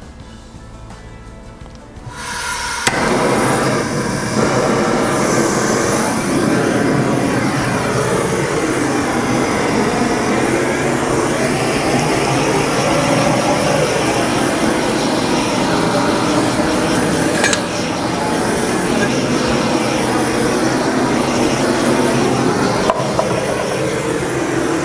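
Handheld butane torch flame, lit abruptly about two seconds in and then hissing loudly and steadily as it is passed over wet acrylic pouring paint.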